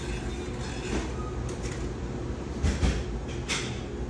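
Steady low rumble of indoor room noise, with two short scrapes or taps about three seconds in.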